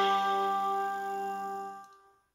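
Instrumental accompaniment of a vọng cổ karaoke backing track: a single held note that fades steadily and dies out near the end.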